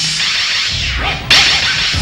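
Electronic noise effects from an industrial song's intro: loud swishing sweeps that arc up and down in pitch, with a sudden sharp crack about a second and a quarter in.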